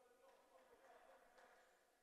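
Near silence: only a faint, steady background hum.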